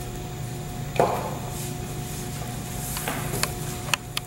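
A glue stick and paper being handled on a tabletop while edges are glued down: a soft knock about a second in and a few small clicks near the end, over a steady room hum.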